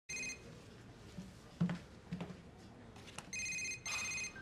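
Mobile phone ringtone: a short electronic ring right at the start, then two more rings near the end. A couple of soft thumps fall in between.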